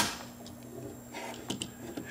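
Clicks of a miniature circuit breaker being pushed and fitted onto a DIN rail in a breaker enclosure: one sharp click at the start, then a few faint ticks about one and a half seconds in.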